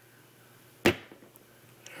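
A single sharp knock about a second in, a plastic toy figure being handled against the tabletop, dying away quickly over quiet room tone.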